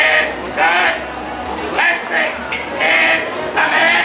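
A man preaching in the street in a loud, raised voice, in short drawn-out phrases with brief pauses between them.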